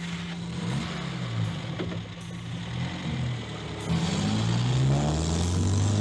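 Car engine revving as the coupe pulls away, its pitch rising and falling several times with the gear changes and growing louder toward the end, over the rush of tyres on gravel.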